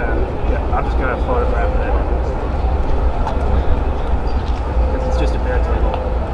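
Steady low rumble with people talking in the background, and a faint steady tone about a second in and again near the end.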